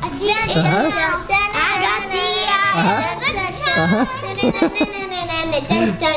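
Young girls' voices, high and nearly continuous, vocalizing playfully without clear words.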